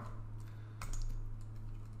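A few clicks of computer keyboard keys, a short cluster about a second in, over a steady low hum.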